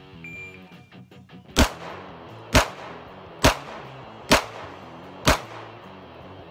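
A shot timer's short electronic start beep, then five pistol shots fired about one a second: a timed five-round string from the ready. Quiet guitar music plays underneath.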